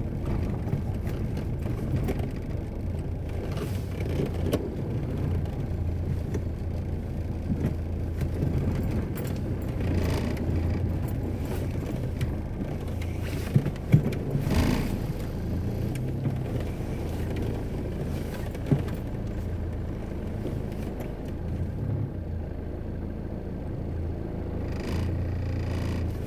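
Car engine and road noise heard from inside the cabin while driving slowly through town: a steady low hum, with a few sharp knocks, two of them close together about halfway through.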